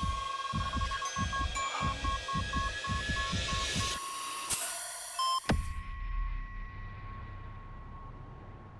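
Dramatic score sound design: a fast low throbbing pulse like a heartbeat, about three or four a second, under a high steady tone that breaks into evenly repeated beeps. A rising swell ends in a sharp hit about five and a half seconds in, after which a single high tone is held over a low rumble, fading.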